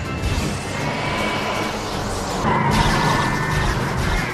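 Film score music mixed with loud crashing explosion sound effects.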